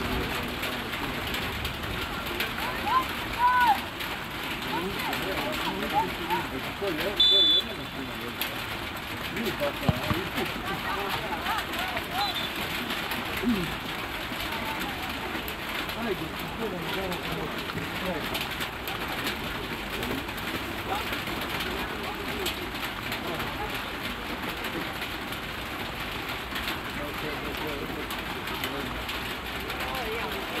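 Players and coaches calling and shouting across a football pitch, over a steady background hiss. A short referee's whistle blast sounds about seven seconds in, as play restarts from a set piece.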